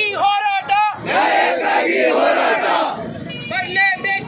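A crowd of men shouting protest slogans: a single loud voice calls out a quick four-syllable slogan, the crowd shouts back together for about two seconds, and the call starts again near the end.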